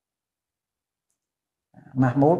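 Near silence, with speech starting again just before the end.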